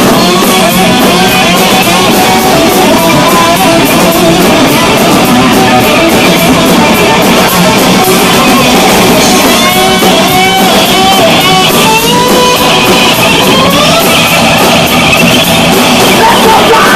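Korean punk band playing live and loud: electric guitars, bass and drum kit in an instrumental stretch, with a fast melodic lead line weaving over the rhythm.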